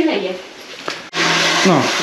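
A domestic well water pump switches on suddenly about a second in and runs with a steady hum and hiss, filling the galvanized hydrophore pressure tank. A single click comes just before it starts.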